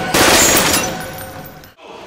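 A loud blast that starts suddenly and dies away over about a second and a half.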